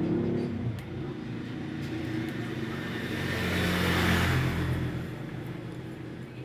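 A vehicle engine rumbling as it passes, swelling to its loudest about four seconds in and fading near the end.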